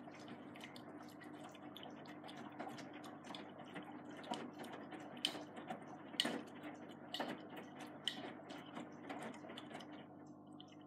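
AEG Lavamat Protex front-loading washing machine tumbling a load of jeans in its wash phase: water sloshing in the turning drum over a steady motor hum, with many small clicks and knocks as the wet laundry drops. The sharper knocks come about once a second in the second half, and the tumbling stops right at the end.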